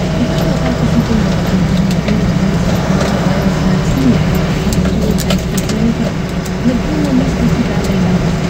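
Delivery vehicle's engine running steadily while driving, heard from inside the cab as a constant low rumble with road noise.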